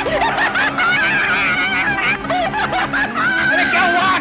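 Laughter, several overlapping voices at once, over a steady low music tone.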